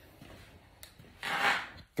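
A faint click a little under a second in, then a brief rustle lasting about half a second.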